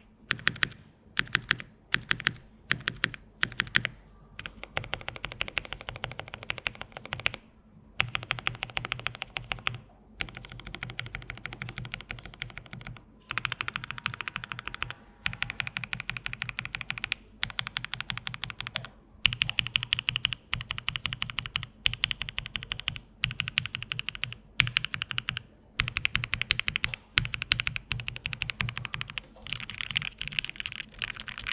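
Spark 67 65% mechanical keyboard with Marshmallow switches and Cherry-profile keycaps being typed on for a sound test. It starts with single keystrokes at about two a second, then moves to fast, continuous typing in runs with short pauses between them.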